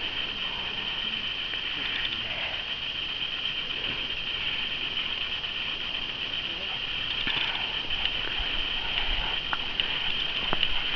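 Walkers and dogs on lead moving along a grassy bush track: soft footsteps and brush rustling under a steady high-pitched drone, with a few faint clicks near the end.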